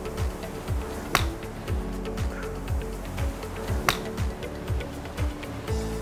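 Background music with a steady beat, and two sharp clicks of a golf club striking a ball off a practice mat, about a second in and again nearly three seconds later.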